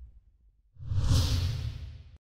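Whoosh sound effect with a deep rumble under it, coming in suddenly about three-quarters of a second in and fading away over about a second: the sting for an animated channel logo.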